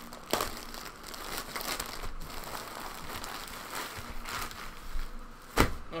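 A plastic mailing bag being torn open and handled, crinkling and rustling throughout, with a sharp crackle about a third of a second in. A single loud thump comes near the end.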